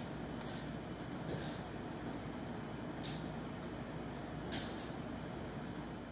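Steady workshop background noise from a running fan, with several short soft hisses and scuffs as fingers rub glue into the wooden frame joints.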